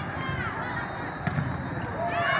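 Volleyball rally sounds: athletic shoes squeaking on the sport-court floor, and two quick thumps of the ball being played a little past halfway. Under it is the steady chatter of a large indoor hall.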